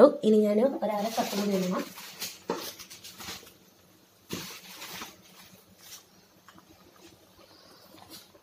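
A person speaks briefly at the start. Then come faint rustling and scraping sounds, with one sharper knock about four seconds in.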